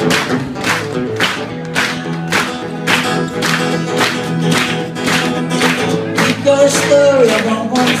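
Acoustic guitar strummed in a steady rhythm, about two strokes a second, as the opening of a song; a man's voice starts singing near the end.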